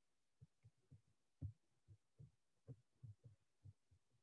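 Near silence broken by faint, short, low thumps at irregular intervals, about a dozen of them, with one slightly stronger thump about a second and a half in.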